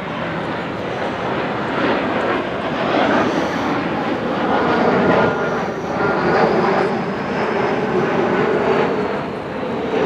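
Twin-engine jet airliner climbing overhead, a steady engine roar that swells to its loudest about halfway through and stays strong.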